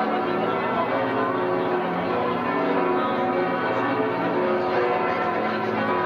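Paderborn Cathedral's bells ringing together in a full peal: many bell tones overlapping in a dense, steady wash.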